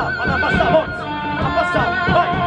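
Rock band playing live with distorted electric guitars and drums, a high wavering line bending up and down in pitch over the top.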